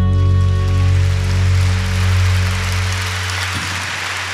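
A live band's final chord, with acoustic guitars, bass and keyboards, ringing out and fading. Audience applause builds beneath it from about a second in.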